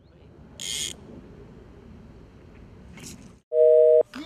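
A loud, steady electronic beep, one held tone lasting about half a second near the end, over faint outdoor background. Under a second in there is a short burst of hiss.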